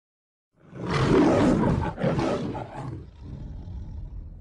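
A roar sound effect starting about half a second in, with a second, shorter roar right after it, then dying away.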